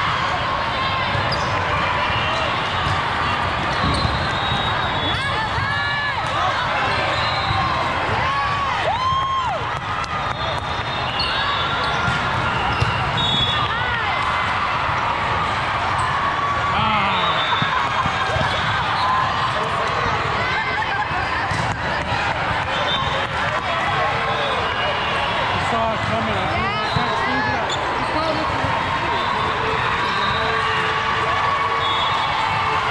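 Sports-hall din of volleyball play in a large hall: many overlapping voices and calls from players and spectators, short high sneaker squeaks on the court, and the thuds of the ball being hit and bounced.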